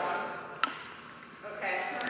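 Talking at the start and again from about one and a half seconds in, with a single sharp click just over half a second in, during a brief lull.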